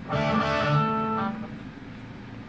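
Electric guitar (ESP/LTD TE200) through the Valeton Dapper Mini's overdrive with no delay or chorus, into a Roland Cube 20XL amp: one chord struck and left to ring, fading out in about a second and a half.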